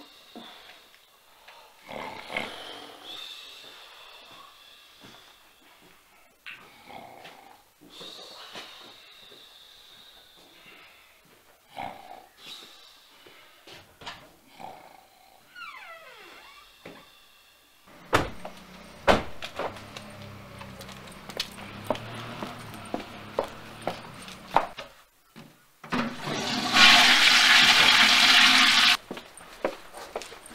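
Toilet flushing: a loud rush of water lasting about three seconds near the end, after a stretch of quieter household movement and sharp clicks.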